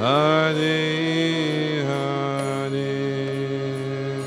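A male voice chanting a devotional prayer to harmonium accompaniment. The voice slides up into a long held note, then steps down to another held note, over the harmonium's steady reedy chords.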